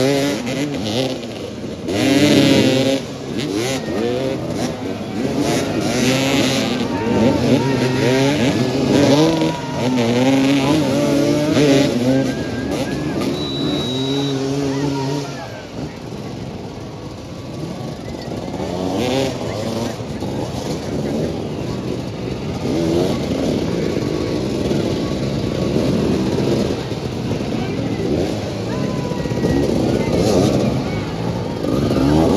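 Several motoball motorcycles running and revving around the pitch, their engine pitch rising and falling constantly as riders accelerate and back off. The engines are loudest in the first half and somewhat quieter after about halfway.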